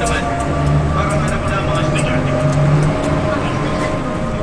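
Steady drone of a bus engine heard from inside the passenger cabin.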